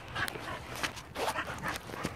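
Dogs at play with a flirt pole lure, their breathing and small vocal noises coming in short, irregular bursts.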